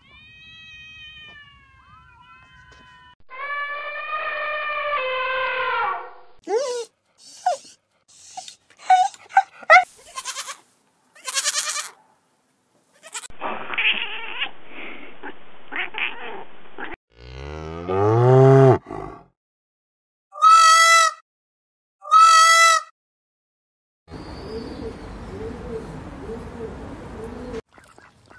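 A string of different animal calls one after another, with short gaps between, beginning with kitten meows falling in pitch. Two matching calls come near the end.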